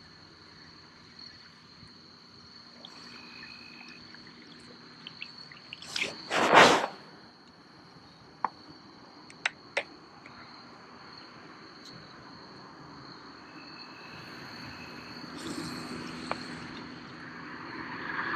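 Insects chirring steadily on one high note, with a brief loud noise about six seconds in and a few sharp clicks around eight to ten seconds.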